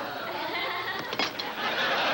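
Sitcom studio audience laughing, a dense crowd laugh that swells louder near the end.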